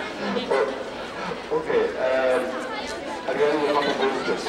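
People talking, with crowd chatter in the background.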